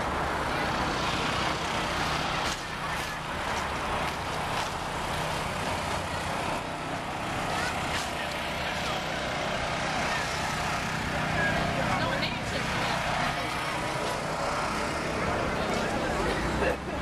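Steady city street traffic noise from passing cars.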